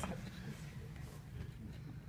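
Quiet room with a low, steady background hum; the tail of audience laughter dies away at the very start.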